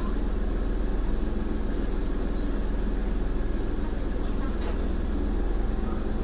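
Car engine idling with a steady low hum, heard from inside the car, with one brief click at about four and a half seconds in.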